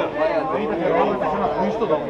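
Chatter of a group of people talking at once, several voices overlapping with no single voice standing out.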